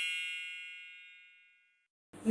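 A bright, bell-like ding sound effect ringing and dying away, gone by about a second and a half in.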